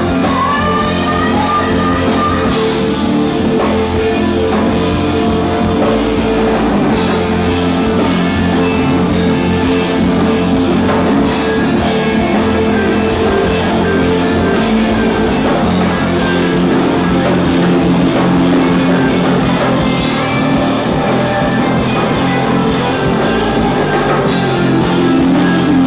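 Loud rock music with guitar and drums, playing steadily, with singing near the start.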